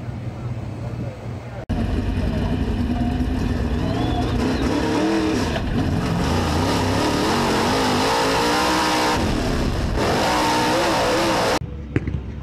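Dirt-track race car engine heard through an in-car camera, its pitch rising and falling as the throttle is opened and lifted, over steady wind and running noise. It comes in suddenly about two seconds in after a quieter opening and cuts off just before the end.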